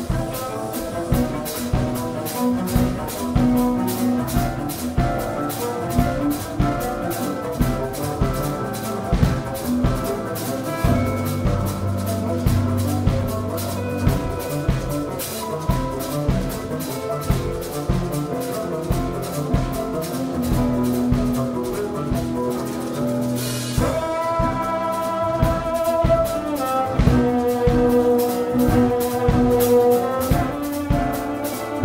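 Live jazz trio playing a tango-inflected piece: cello as the bass voice, a drum kit keeping a steady, quick cymbal and drum rhythm, and a Nord stage keyboard. About three-quarters through, a brief cymbal swell, after which long notes are held over the rhythm.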